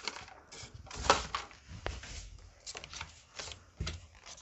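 Playing cards being dealt one at a time from a deck onto a cloth-covered table: a run of short, irregular flicks and soft taps.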